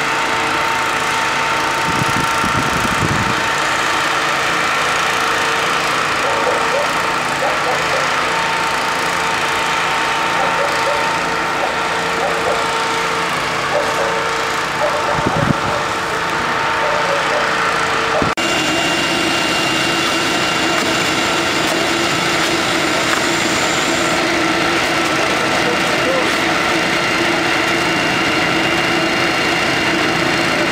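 Fire engines running steadily with a constant mechanical hum, with indistinct voices in the background. The sound changes abruptly a little past halfway through.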